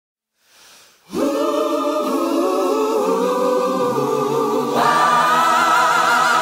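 Song intro of sustained, layered choir-like vocal harmonies, held long notes with vibrato, starting about a second in after a near-silent start; a higher voice joins near the end.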